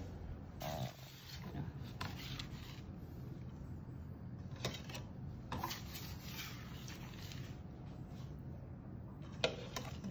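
Faint scraping and rubbing of a spatula working melted chocolate against a stainless steel bowl and the work surface, with a few light clicks of the tools.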